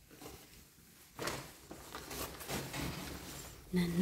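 Hands rummaging through discarded electronics and cables, with plastic rustling and small knocks starting about a second in.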